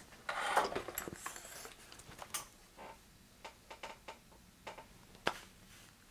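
Handling noise from a camera being repositioned: rustling and scraping for the first second or so, then scattered light clicks and knocks, with one sharper click about five seconds in.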